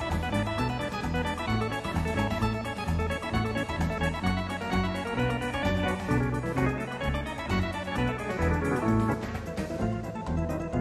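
Technics G100 electronic organ playing an instrumental medley: a busy melody over a rhythmic bass line.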